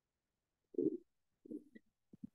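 Video-call audio that is fully gated to silence, broken by two brief low murmurs of a voice, about a second in and again around a second and a half in.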